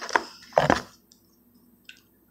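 Two short bursts of handling noise as rigid plastic toploader card holders are shuffled in the hand, then a small click near the end.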